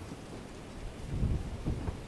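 Low, uneven rumble of wind buffeting the microphone, swelling a little about a second in and again near the end.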